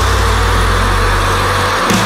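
Heavy rock band recording: a low chord held on guitars and bass over a wash of cymbals, breaking off shortly before the end.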